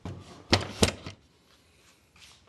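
Two sharp knocks about a third of a second apart: a DeWalt router in its wooden lift carriage knocking against wood as the assembly, just pulled out of the router table, is handled.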